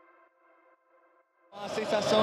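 Faint electronic background music fades out to near silence. About one and a half seconds in, a loud mix of voices and noise cuts in abruptly.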